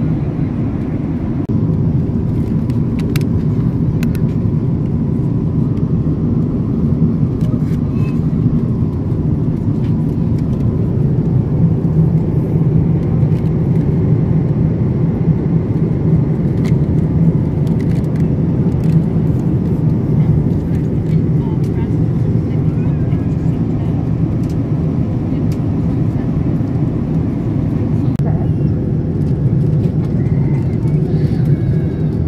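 Steady low rumble of a jet airliner's cabin in flight, heard from a passenger seat, with a few faint clicks.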